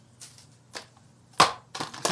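Handling noise: a few short taps and knocks as a power adapter and a cardboard box are handled on a table, the loudest knock about one and a half seconds in.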